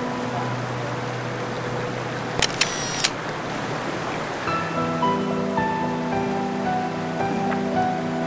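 Slow background music of long held chords, with a bright chime-like flourish about two and a half seconds in and a fuller chord coming in about halfway, over a steady rush of water.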